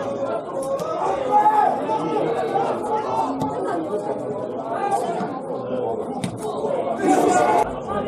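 Overlapping voices of players and spectators calling out and chattering at a football match, with a couple of brief sharp knocks in the second half.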